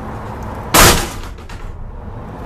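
Slam-lock divider of an all-aluminium horse trailer latching shut: one sharp metal bang about three quarters of a second in, with a brief ringing tail.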